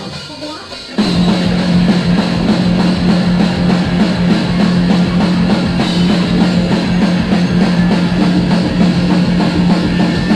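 A live rock band comes in suddenly about a second in and plays loud: a drum kit hit hard under electric guitars and bass, with a low note held steady underneath.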